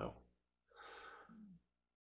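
A man's faint breath, a short in-breath about a second in, followed by a brief low voiced sound before he speaks again.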